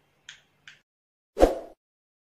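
A single short, loud pop about one and a half seconds in, after two faint ticks, typical of an outro animation's pop sound effect.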